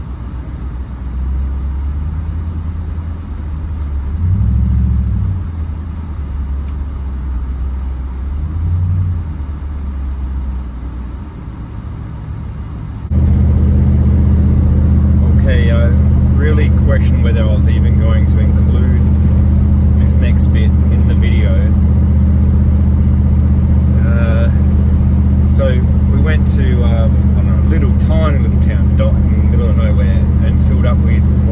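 Engine and road drone of a Nissan Patrol Y62 heard from inside the cabin while driving, rising twice as the car accelerates through town. About 13 seconds in it changes to a louder, steady low drone at cruising speed, with a man's voice over it.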